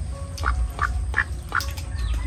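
White domestic duck giving three short quacks in quick succession, each about a third of a second apart.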